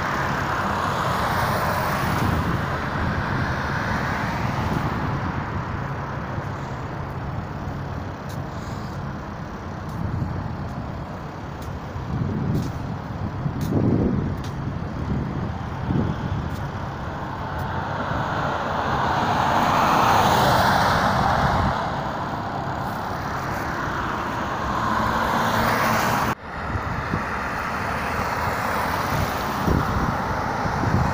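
City bus heard from inside: steady engine and road noise as it drives and slows. A hiss of air swells about two-thirds of the way through, and there is a sharp click near the end.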